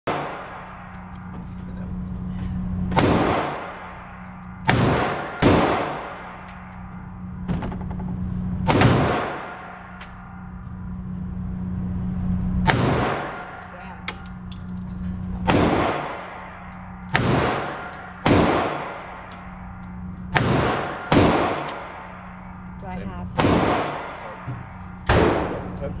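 Semi-automatic pistol shots in an indoor shooting range, each crack followed by a ringing echo off the booth walls, about fourteen at irregular intervals with a steady low hum underneath.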